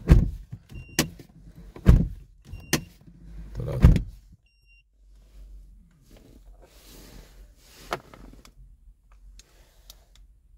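Car door of a Mazda CX-7 shut three times, about two seconds apart, with sharp latch clicks as it is reopened between shuts: the open-and-close-three-times step for putting the car into key fob programming mode. Softer rustling and a single click follow.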